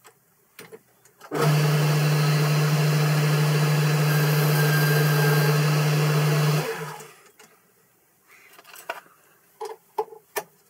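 Boxford lathe switched on with a steady motor hum, running about five seconds while a knurled part is parted off, then switched off and running down. A few light clicks of handling follow near the end.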